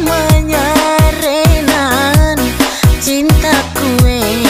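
A woman singing a pop song into a microphone through a sound system, with a sliding, vibrato melody line. Under her is an amplified backing track with a deep electronic kick drum.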